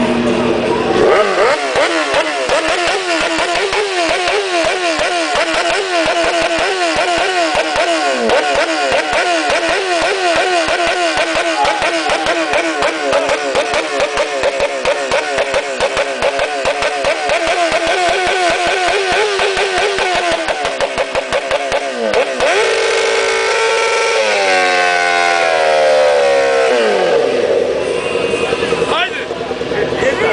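Sport motorcycle engine revved hard and held high for about twenty seconds with a fast, even stutter. The revs then drop and waver in a few falling blips, and rise again near the end.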